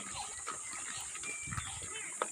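Native pigs grunting low, twice.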